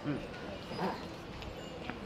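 Quiet speech in two short phrases over the steady background noise of a large store.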